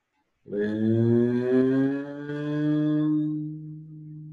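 A man's voice chanting one long, low held vowel tone, steady in pitch, starting about half a second in and fading away near the end.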